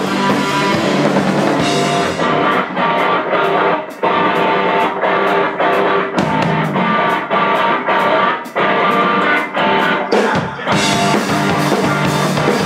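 Live rock band playing loudly: electric guitar, bass guitar and drum kit. About two seconds in the sound thins to a choppy, even rhythm, and it fills out again near the end.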